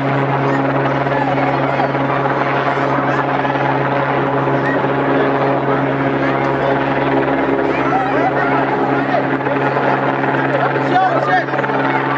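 Helicopter overhead: one steady low drone that does not change in pitch or level, with voices chattering over it.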